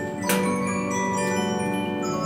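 An 1896 American-made Regina disc music box playing a tune. The projections on its large turning steel disc pluck the tuned steel comb, giving many ringing, overlapping notes, with one brighter, louder chord struck about a third of a second in.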